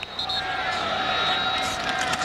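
Referee's whistle blown briefly as the play is ruled dead, followed by steady stadium crowd noise as heard on a TV broadcast.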